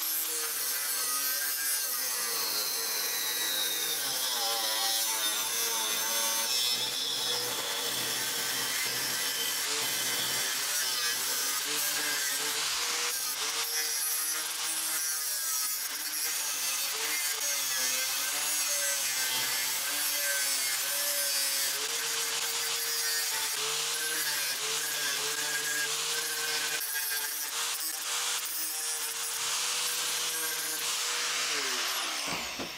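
Angle grinder with a thin cutting disc cutting into a steel plate, a continuous harsh grinding hiss over the motor's whine, which dips and recovers as the disc bites into the metal.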